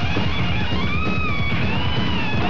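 Loud rock music with electric guitar playing, a high line sliding up and down in pitch above a dense low end.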